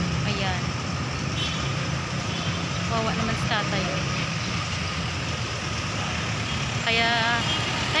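Street traffic: a steady low rumble of vehicle engines passing on the road, with a voice heard briefly now and then.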